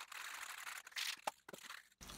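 Aerosol can of final fixative being shaken by hand: a faint rattling rustle that stops about a second in, followed by a few small clicks.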